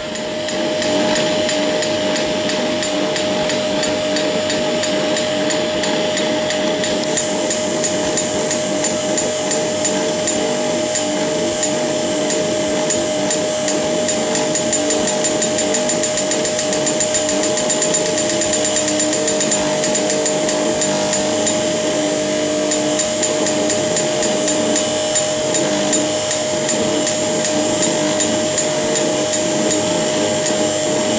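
Chromatix CMX-4 flashlamp-pumped dye laser firing repeatedly: a rapid, even train of sharp clicks from the flashlamp discharges, which grow sharper about seven seconds in, over a steady mid-pitched hum from the running equipment.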